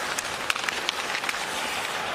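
Hockey arena crowd noise, a steady hubbub, with several short, sharp clicks and knocks from sticks, puck and skates on the ice.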